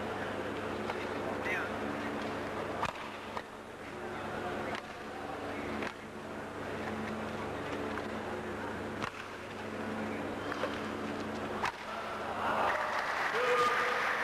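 Rackets striking a shuttlecock during a badminton rally: single sharp cracks, irregularly a second or a few seconds apart, over a steady hum and crowd murmur. Near the end the crowd noise swells into cheering and clapping as the rally ends.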